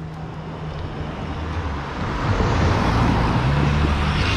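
A motor scooter passing close by on the road, its engine hum and tyre noise growing louder over the last couple of seconds as it comes alongside.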